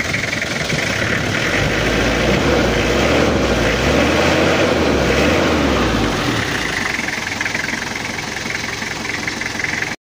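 Turbocharged Toyota Kijang diesel engine running at idle. Its sound swells for a few seconds in the middle, then settles back.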